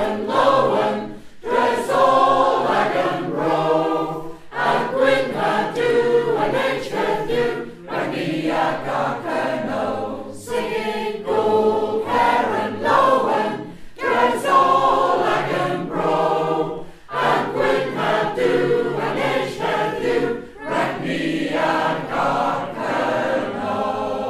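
Choir singing a song chorus in Cornish, several voices in harmony, phrase after phrase with short breaks for breath, ending on a held chord.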